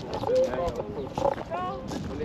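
Voices of people talking, not close to the microphone, with a higher voice rising and falling in pitch in the second half.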